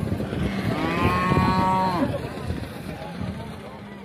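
A bovine mooing once: a single long, steady call of about a second, near the middle.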